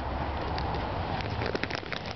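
Rain pattering, with scattered sharp drop ticks that bunch together about a second and a half in.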